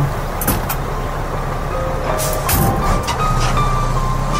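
A motor vehicle's engine running at a low, steady rumble as a drama sound effect, with a couple of sharp clicks about half a second in and a short rush of noise a little after two seconds. Soft held keyboard notes of a music cue come in over it from about halfway.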